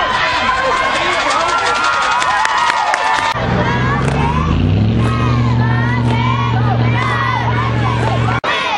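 Spectators in the stands shouting and cheering, with many voices at once. After a cut a little over 3 s in, a low motor drone sits under the voices, rising in pitch for about a second and then holding steady.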